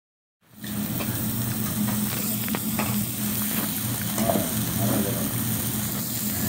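Food sizzling and frying on a hibachi flat-top griddle, starting about half a second in, over a steady low hum, with a few sharp clicks.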